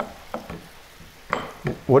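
A few light taps and clicks, the loudest about one and a half seconds in: hands handling a flush round stainless-steel pop-up cover set into a stone kitchen countertop.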